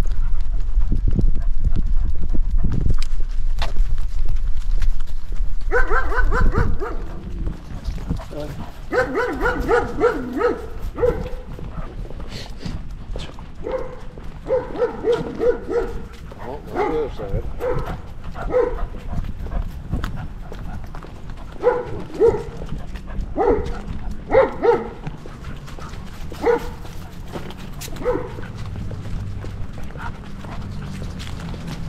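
A dog giving short, high-pitched whining calls in quick runs of three to five, over and over. A loud low rumble on the microphone covers the first six seconds or so.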